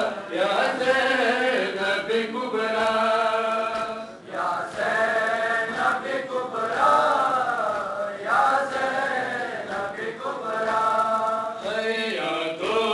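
Male voices chanting a nauha, a Shia Muharram lament, in long sung phrases over a loudspeaker.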